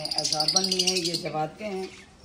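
A caged bird chirping in a rapid, dense run of high calls that fades out a little past the first second.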